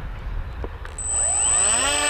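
Electric motor and pusher propeller of a radio-controlled foam plane throttling up about a second in: a whine that rises in pitch and then holds steady, with a thin high tone above it.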